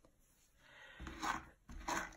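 Faint rubbing and rustling of hands handling curly wool locks, ending with a wooden-handled brush being picked up off the table.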